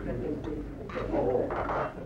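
Indistinct murmur of bar patrons talking, with two brief hissy bursts in the second half.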